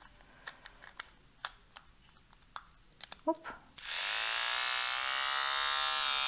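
Light clicks as a new trimming head is fitted onto a battery-powered personal trimmer. About four seconds in, the trimmer's small motor switches on and buzzes steadily, its pitch rising briefly as it comes up to speed.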